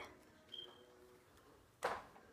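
Quiet, with one sharp click just before the end as a small object is handled.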